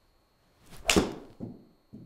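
Golf iron on a full swing striking a ball off a hitting mat: a short swish, then one sharp crack of impact about a second in, followed by a few softer thuds. The ball was caught slightly thin.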